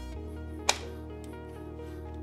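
Background music, with one sharp click about two-thirds of a second in: an Intel Arc A380 graphics card snapping into the motherboard's PCIe slot as it is pressed home.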